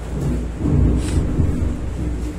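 A low rumble with several dull thuds, swelling about half a second in and lasting a little over a second.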